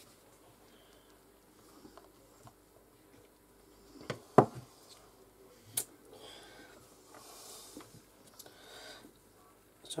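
Quiet handling of polymer clay being pressed into a silicone mould by hand, with one sharp, loud sound about four and a half seconds in and a smaller click near six seconds.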